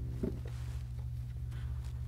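A held C major chord on the piano (C, E, G in the left hand) cuts off just after the start. After that only a steady low hum and faint room noise remain.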